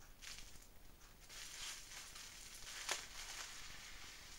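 Plastic bubble wrap crinkling as it is handled and pulled off a wrapped object, growing busier after about a second, with one sharp click about three seconds in.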